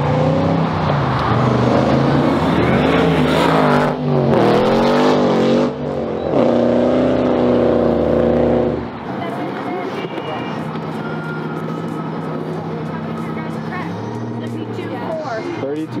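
A high-horsepower modified car accelerating hard along the road, its engine revving up and dropping back through gear changes, then holding a high steady note. About nine seconds in it gives way to quieter passing-traffic noise.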